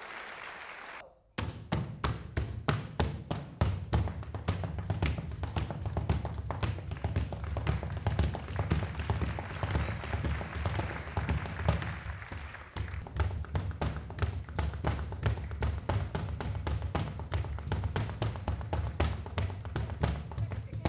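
Rapid Kathak and flamenco dance footwork: a dense, fast run of stamps and heel taps on the stage floor. It starts suddenly about a second in, just after the guitar accompaniment stops, and keeps going without a break.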